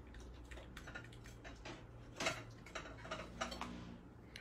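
Faint scattered clicks and light clinks of a stack of ceramic plates being handled and set down on a wooden counter, with one louder knock about two seconds in.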